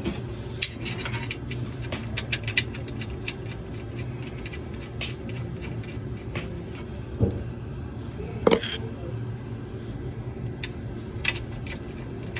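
Scattered light metallic clicks and taps, with two louder ones a little past the middle, as an oil drain plug with its gasket is handled and threaded by hand into the Kawasaki engine's oil pan. A steady low hum runs underneath.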